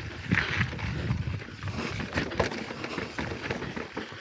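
Mountain bike rolling down a rocky dirt trail: tyre and wind rumble with scattered knocks and rattles as the bike goes over rocks, one sharper knock about halfway through.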